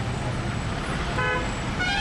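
Vehicle horn giving short toots, one a little after a second in and another near the end, over the steady low running of engines as a bus and a car take a hairpin bend.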